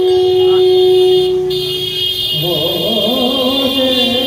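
Raga kirtan, Bengali devotional singing: a long steady held note, then about two seconds in a voice starts sliding and wavering through an ornamented melodic line over a sustained accompanying tone.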